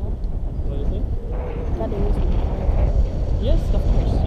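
Airflow buffeting the camera microphone in flight under a tandem paraglider: a steady low rumble that grows a little louder near the end.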